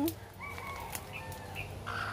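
Broody hen sitting on eggs, giving a few faint, short high calls, with a raspy sound starting near the end.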